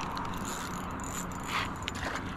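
Spinning reel being cranked, its gears whirring steadily as a lure is retrieved.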